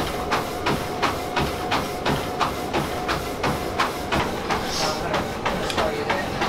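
Running footfalls pounding a treadmill belt, about three a second, over the steady whine of the treadmill's motor.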